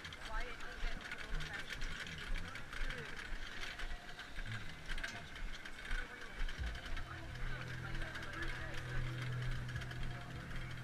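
Irregular clicking and rattling of a wheeled metal instrument cart, loaded with saxophones and other band instruments, rolling across turf, with people talking around it. A low steady hum comes in about seven seconds in.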